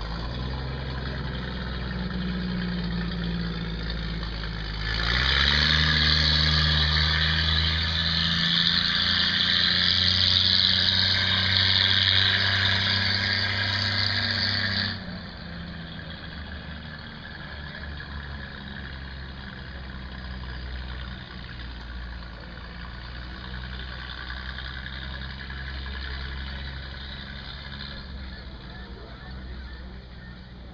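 GM Futurliner's engine pulling away at low speed: a steady low engine note that steps up in pitch about five seconds in and turns louder and harsher. About fifteen seconds in it drops back sharply to a fainter low rumble as the vehicle moves off.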